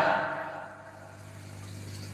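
A pause in speech: the last word's echo dies away in the first second, leaving faint room tone with a low, steady hum.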